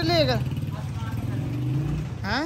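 Motorcycle engine running as the rider pulls away, its pitch rising slightly toward the end. A drawn-out vocal call overlaps the start and falls away about half a second in.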